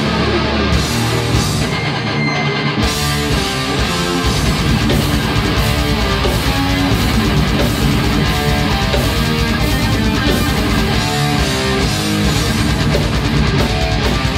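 Thrash metal band playing live: distorted electric guitars riffing over bass and drums. The cymbals come in about three seconds in, and the full band then plays on steadily.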